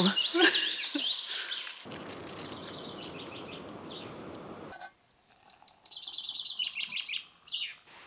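Small songbirds chirping and singing, with a short laugh at the start. About two seconds in, the steady hiss of a canister gas camping stove burner heating a pot of water comes in and cuts off suddenly near five seconds. After that, birdsong alone: runs of quick high chirps and calls.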